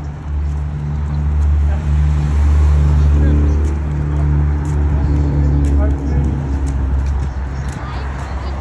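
City street traffic with the low, steady engine rumble of a nearby motor vehicle, swelling about a second in, loudest around the middle and easing toward the end.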